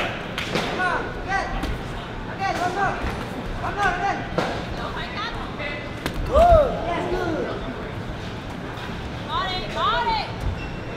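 Gloved punches landing in a boxing bout, with dull thuds, among short shouted calls from the people around the ring; the loudest thud and shout come about six and a half seconds in.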